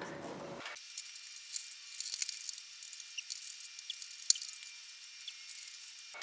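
A few small clicks and ticks, with a sharp one about four seconds in, over a faint high hiss: a thin knife being worked into the glued seam between a violin's top and ribs to open the instrument.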